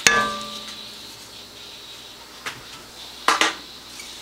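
A single metallic clink against the cookpot that rings on for about a second, then faint hiss with a small tick about halfway through and a short soft knock near the end.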